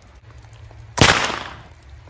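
A single rifle shot about a second in, sharp and loud, its echo dying away over most of a second.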